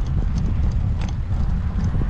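Bicycle rolling over concrete paving blocks: a steady low rumble from the tyres and frame, with scattered clicks and rattles as the wheels cross the block joints.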